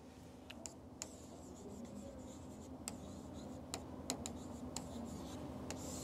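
Faint scratching and a scatter of small taps from a pen writing on a board.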